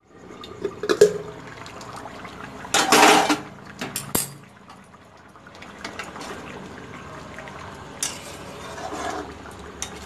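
A metal lid knocked on and lifted off a kadai of paneer curry, then a spatula stirring and scraping through the gravy in the pan. Scattered knocks and clinks, with the loudest clatter, about half a second long, about three seconds in.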